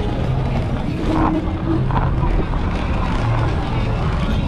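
Steady low rumble of wind and rolling noise on a camera microphone riding an electric scooter at low speed, with people talking nearby.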